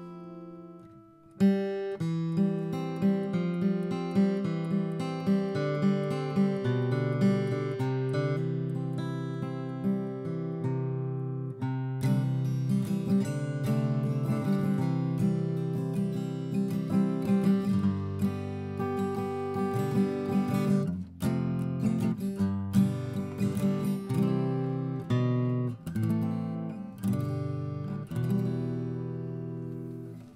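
A grand concert-size acoustic guitar played solo, a chord progression picked and strummed with the chords left to ring. The playing starts with a strong chord about a second and a half in.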